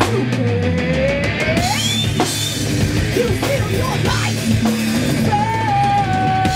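A live punk-metal band playing loud: distorted electric guitar, bass guitar and drum kit, with a woman singing over them. A long note is held near the end.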